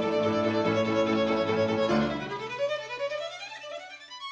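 Classical piano trio of violin, cello and grand piano playing together. About halfway through the full sound thins out and a single line climbs steadily in pitch toward the end.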